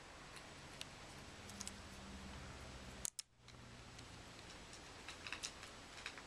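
Faint, sparse clicks of small plastic timer gears being handled and pressed onto their axle pins in a clear plastic gearbox, over a low steady room hum. The clicks come singly, with a sharper one about three seconds in and a few close together near the end.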